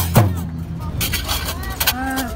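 Dakka Marrakchia drumming stops on a last stroke just after the start. Crowd voices, a few loose hits and a steady low hum follow.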